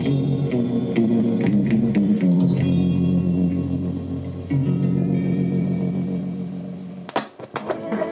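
A 1970s-style Soviet pop song with guitar and bass, playing back from a stereo reel-to-reel tape recorder and fading out over the last few seconds. A few sharp clicks break in near the end.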